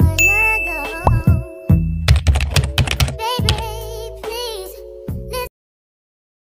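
Outro music with a bell-like ding and a run of sharp clicks, the sound effects of an animated subscribe-and-like button; it cuts off suddenly about five and a half seconds in.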